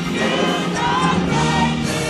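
Gospel choir singing.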